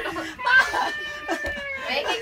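A person's long, high-pitched squeal, held steady for over a second and dropping in pitch at the end.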